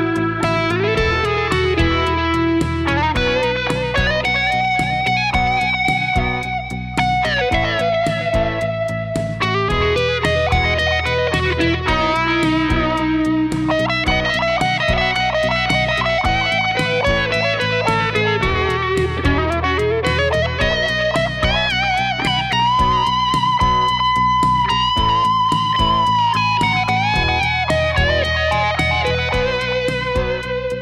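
Electric guitar lead on a Stratocaster's neck pickup, played through overdrive pedals, a Univibe and a digital delay into a Fender Tone Master Twin Reverb amp, miked with an SM57. It plays sustained, bent notes with vibrato, with a slide down and back up about two-thirds of the way through and a long held high note just after that.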